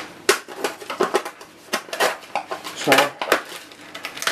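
Kitchen clatter: dishes, pans and cutlery knocked and handled on a counter, a scattered series of sharp clicks and knocks.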